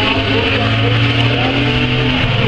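Several stockcar engines running together, heard as a loud, steady drone of overlapping engine notes.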